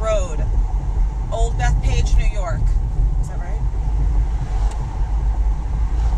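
Car cabin noise while driving: a steady low rumble of engine and road.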